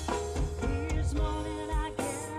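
Live rock music: a stage keyboard played with a piano sound, a woman's singing voice coming in about half a second in, and a drum beat underneath.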